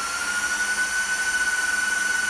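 Industrial cooling fans of an HP ProLiant DL320e Gen8 v2 1U rack server running at high speed, built for maximum airflow with no regard for noise. They make a steady, high-pitched whine over a broad rushing hiss.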